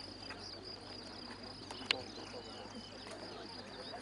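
Steady high-pitched trilling of crickets in the grass, with faint short chirps and one sharp click about two seconds in.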